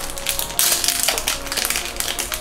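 Small plastic foil packets crinkling and rustling rapidly as they are torn open by hand, over faint background music.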